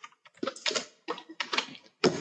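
Typing on a computer keyboard: a quick, uneven run of keystrokes as a word is typed.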